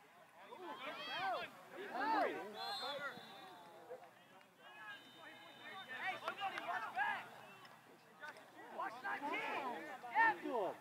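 Indistinct shouted calls from players and spectators across an open soccer field, coming in bursts with no clear words.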